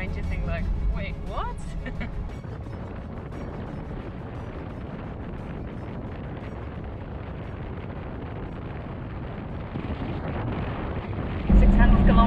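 Steady rush of wind and road noise from a Toyota Land Cruiser 76 series driving on a paved road, picked up by a camera mounted on the outside of the vehicle. A low drone fills the first two seconds, and a much louder low rumble sets in just before the end.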